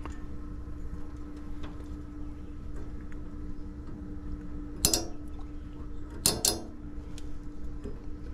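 Hands working wiring and a plug connector inside an outdoor condensing unit: small metallic clicks and clinks, with sharper knocks about five seconds in and twice more about a second later, over a steady low hum.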